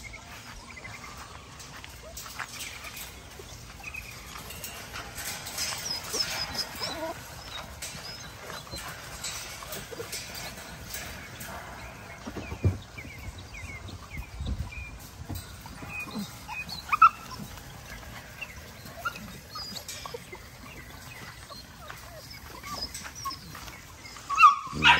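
Puppies in a wire kennel pen whining and yipping faintly on and off, with one louder cry about two-thirds of the way through.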